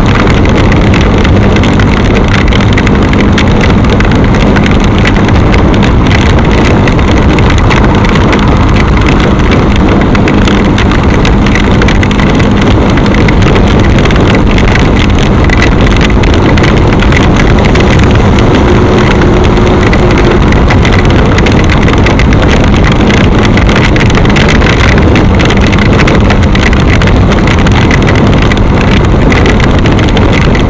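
Bajaj Pulsar NS200's single-cylinder engine running steadily at cruising speed under loud, steady wind rush on the microphone, on a rain-wet road.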